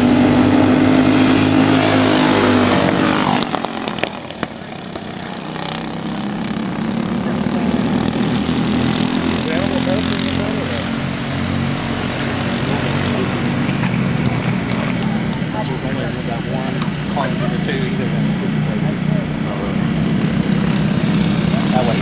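Racing kart engines at speed: a group of karts passes close by, their pitch falling as they go past in the first few seconds. After that come the rising and falling engines of karts farther round the track.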